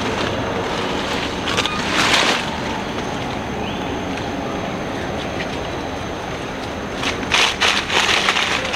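Steady rushing outdoor noise, like wind or moving water, with two short louder bursts of rustling, about two seconds in and near the end.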